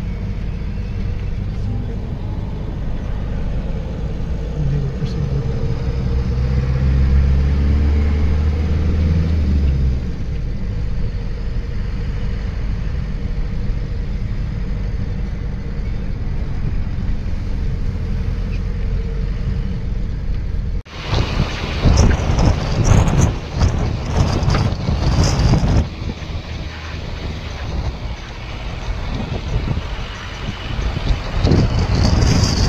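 Steady engine and road rumble heard from inside a vehicle driving behind an army truck convoy, with a low engine note that rises and holds for a few seconds early on. About two-thirds of the way through, the sound cuts abruptly to louder, gusty wind buffeting the microphone over the traffic noise.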